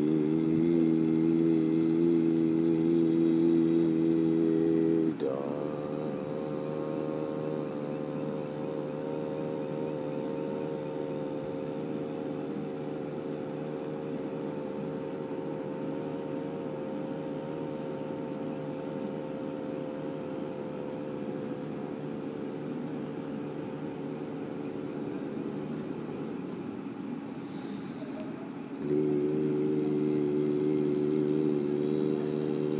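Low ambient background-music drone: several held tones stacked together. About five seconds in, a short falling glide leads to a different, quieter chord, which holds until near the end, when the first louder chord returns.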